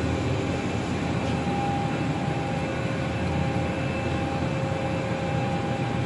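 Emag VSC 630 vertical turning machine powered on and idling: a steady mechanical hum with a few thin, steady whine tones above it.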